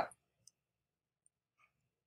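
Near silence, with the end of a spoken word right at the start and a single faint, short click about half a second in.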